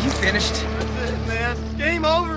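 A voice over a steady, sustained music drone; the voice comes in about a second in.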